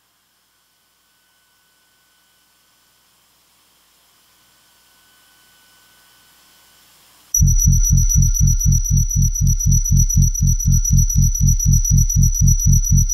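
Electronic music from a modular synthesizer: a faint high tone over hiss slowly swells. About seven seconds in, a loud pulsing bass cuts in suddenly at about four to five pulses a second, under a steady high whine.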